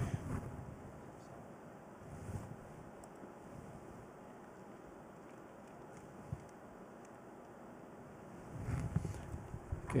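Faint steady room noise with a few light clicks and knocks from handling equipment on the table; no music yet.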